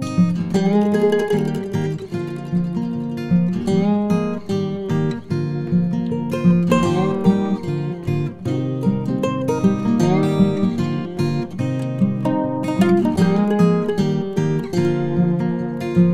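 Background music: acoustic guitar playing a run of plucked and strummed notes.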